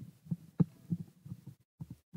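Soft, low thumps repeating about three times a second, with short gaps between them.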